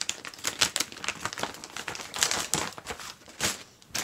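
Plastic costume packaging crinkling and crackling as it is pulled open by hand, a rapid, irregular run of sharp crackles.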